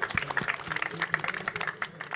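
An audience applauding: many irregular hand claps overlapping.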